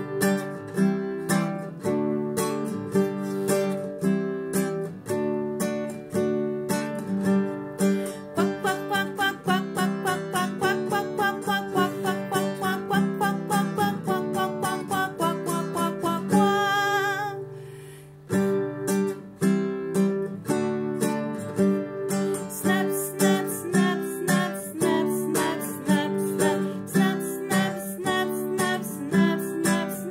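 Nylon-string classical guitar strummed in a steady rhythm, with a woman's voice singing along in places. The playing breaks off briefly a little past halfway, then picks up again.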